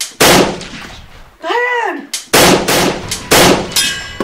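Three gunshots, each a sharp bang with a short tail: one just after the start, one a little past two seconds and one a little past three seconds. Between the first and second is a short whine that rises and then falls in pitch.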